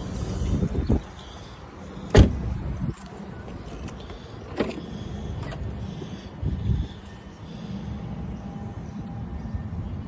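Car doors on a Tesla Model Y: a rear door shut with one loud thud about two seconds in, then a lighter click a couple of seconds later as the front door is unlatched. Low rumbling noise comes and goes around the doors.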